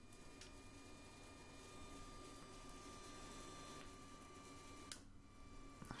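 Near silence: room tone with a faint steady high-pitched whine that cuts off about five seconds in.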